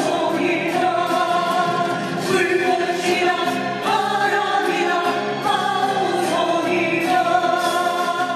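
Live singing with acoustic guitar accompaniment, slow with long held notes, heard in a reverberant hall.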